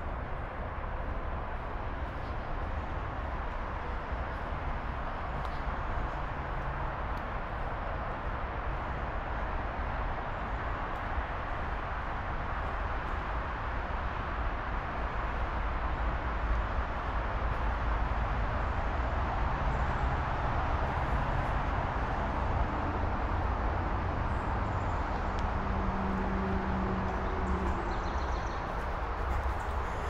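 Steady outdoor ambient noise with a low rumble underneath, growing slightly louder in the second half.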